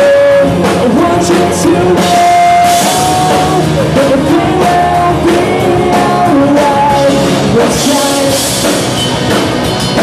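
Live rock band playing: a man singing held notes over guitar and a drum kit, with cymbal strokes throughout.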